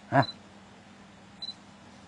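A pause in a man's talk: one short voiced syllable just after the start, then only a faint steady low hum, with a brief faint high chirp about halfway through.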